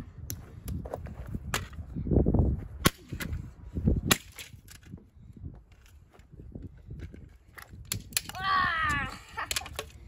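Sharp, irregular cracks and knocks of a hand tool striking and prying at hard plastic and metal parts, with heavier thuds about two and four seconds in.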